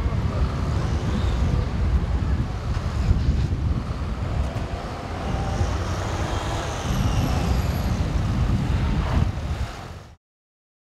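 Traffic from a slow column of cars, vans and police cars driving along the road below: a steady low rumble.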